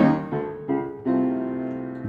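Upright piano playing slow blues accompaniment: four chords struck in the first second, then left to ring.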